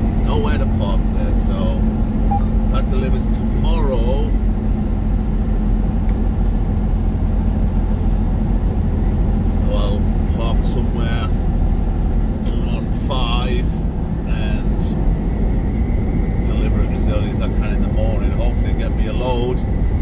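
Semi truck cab interior while driving: a steady low engine and road rumble, with a steady hum that fades out about two-thirds of the way through. Short, scattered voice sounds come through now and then.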